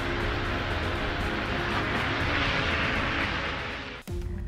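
Steady rushing roar of a high-volume fire-fighting water cannon jet, with a low rumble beneath, fading near the end.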